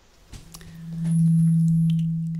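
A steady low tone at a single pitch that swells in about half a second in, holds loud, and begins to fade near the end, with a few faint clicks as it starts.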